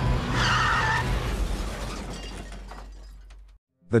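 Car crash sound effect from a film soundtrack: a loud impact with breaking glass, loudest about half a second in. It then dies away over the next few seconds above a low rumble and cuts off abruptly shortly before the end.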